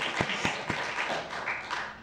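Audience applauding, the clapping thinning and dying away near the end.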